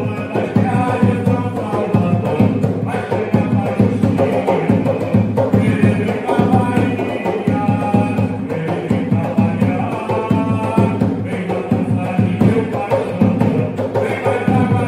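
A man singing an Umbanda ponto (devotional chant) into a microphone, accompanied by a hand-struck atabaque drum beating a steady, fast rhythm.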